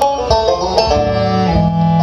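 Live acoustic string band playing an instrumental passage: quick banjo picking runs over fiddle, cello and guitar. Longer low bowed notes are held underneath from about halfway through.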